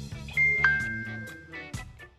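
A two-note electronic chime, a higher note then a lower one held for about a second: a phone's incoming-message notification. It sounds over background music with a rhythmic plucked guitar.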